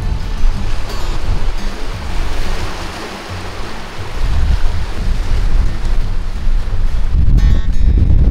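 Sea waves washing in among shoreline boulders, the hiss of the surf swelling in the middle. Wind rumbles on the microphone through the second half.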